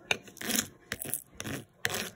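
Fingers rubbing a vinyl sticker and its transfer sheet down onto the rough surface of a fiberglass arm cast, a few short scratchy, crinkling scrapes.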